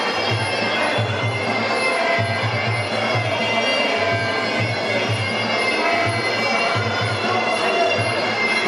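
Muay Thai sarama fight music: a shrill, nasal pi java reed melody playing continuously over a repeating low drum pattern, as played during a bout.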